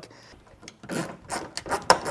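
A nylon zip tie being pulled tight around tail-light wiring, its ratchet teeth giving a run of rasping clicks that starts about a second in, with one sharper click near the end.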